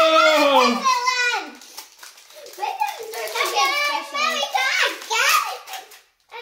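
Children's voices: a long drawn-out "whoa" falling in pitch over the first second and a half, then more child vocalizing without clear words from about two and a half seconds in.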